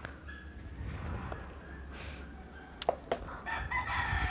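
Rooster crowing faintly, with a couple of sharp clicks from a hand-held clip-on microphone about three seconds in.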